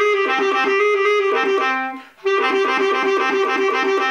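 Bass clarinet playing a fast sixteenth-note passage in the clarion register, leaping back and forth by perfect fifths. It comes in two phrases with a short break about two seconds in.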